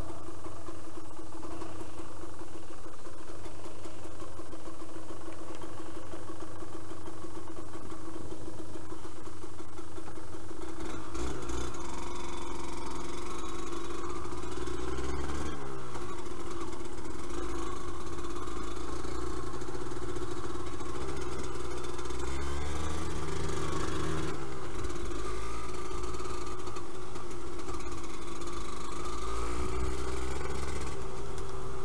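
Yamaha DT125LC's two-stroke single-cylinder engine running steadily at low revs for about the first ten seconds, then rising and falling in pitch as the bike is ridden along a dirt track, throttle opened and closed.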